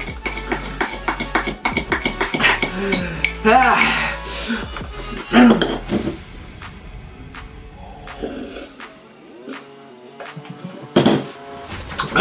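A metal spoon clinking and scraping against a glass boot mug while stirring very thick Frosty, with many quick clinks over the first six seconds, then it stops. Music plays underneath, with brief grunts near the end.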